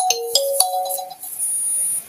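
Phone ringtone playing a short melody of single electronic notes that stops about a second in, then a thin high-pitched tone near the end. It is an incoming call on the studio phone line.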